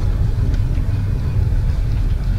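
Steady low rumble of a car driving along a snow-covered street: road and engine noise heard from the moving vehicle.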